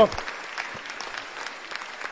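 Senators applauding in the chamber, a steady light clapping heard well below the level of the speech around it.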